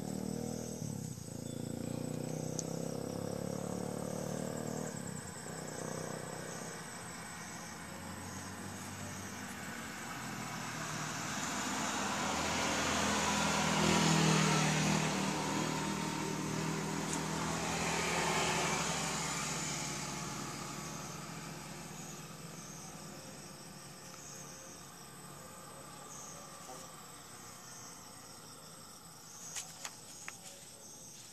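A motor vehicle passing by, rising to a peak about halfway through and then fading away, over steady insect chirping.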